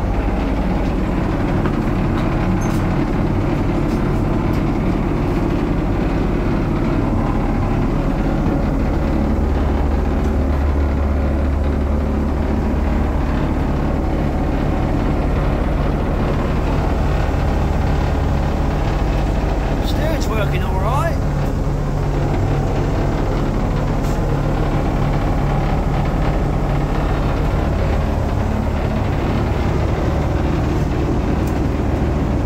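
The inboard engine of a 1970s canal cruiser running steadily under way, heard from inside the cabin, with a loose floorboard rattling over the drone.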